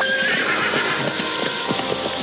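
A herd of horses milling in a dirt corral: one horse whinnies high at the start, over the quick, uneven beat of many hooves on the ground.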